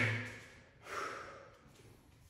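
A man breathing hard from exertion during V-crunches: one short, sharp exhale about a second in.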